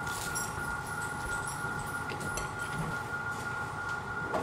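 Steady room noise with a constant thin high hum and no distinct event.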